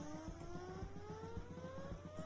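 A vehicle motor revving up: one smooth whine rising steadily in pitch, with a faint even pulsing beneath.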